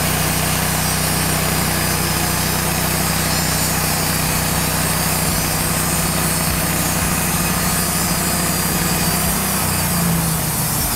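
Wood-Mizer LT15 portable sawmill's engine running steadily, its pitch rising slightly near the end.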